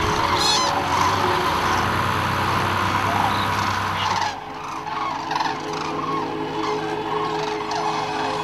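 A large flock of common cranes calling together in a dense chorus of trumpeting calls. About four seconds in, the sound suddenly thins to scattered separate calls.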